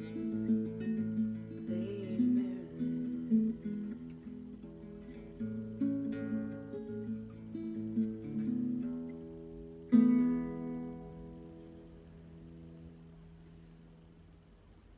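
Classical guitar picking a slow closing passage with moving bass notes, then a final chord struck about ten seconds in and left to ring and fade away.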